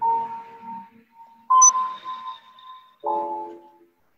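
Three struck bell-like chime tones about a second and a half apart, each ringing and fading within about a second; the last is lower and fuller.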